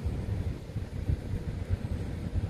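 Low, uneven rumble of wind buffeting the microphone in a light breeze.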